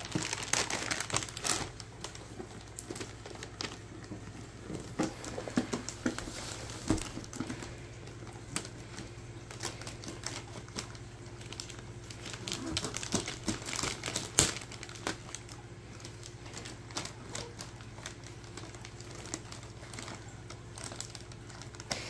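Gift-wrapping paper crinkling and crackling in irregular bursts as a baby grabs and pulls at a wrapped box, with one sharper crackle a little past the middle. A steady low hum runs underneath.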